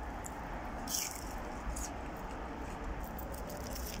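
A person biting into and chewing a crispy battered onion ring, with a few small crunches, the clearest about a second in, over a steady low background rumble.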